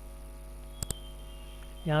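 Computer mouse clicks: a short sharp click right at the start and a quick double tick about a second in, over a steady electrical mains hum on the recording.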